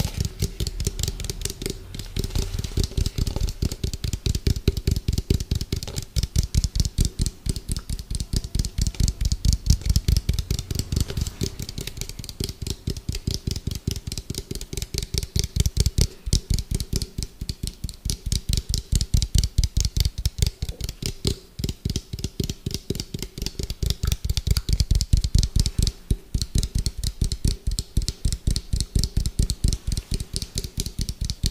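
Fingers and nails tapping fast and hard on a hollow orange plastic bowl held close to the microphone, a rapid even patter of many taps a second with a hollow ring, broken by a few short pauses.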